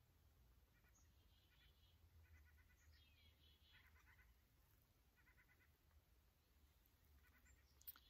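Near silence outdoors, with faint distant animal calls: short pulsing cries repeated every second or so.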